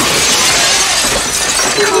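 A large plate-glass shop window shattering as a body crashes through it, with glass showering and tinkling down. It starts suddenly and goes on for the whole two seconds.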